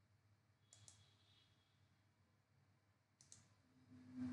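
Near silence with faint computer mouse clicks: two quick pairs of clicks, one about a second in and one near the end.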